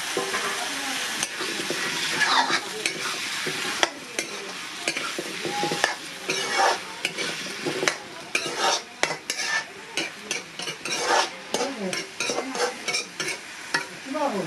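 Potatoes and onions frying in oil in a metal kadai, sizzling steadily, stirred with a metal spatula. From about four seconds in, the spatula scrapes and clinks against the pan over and over.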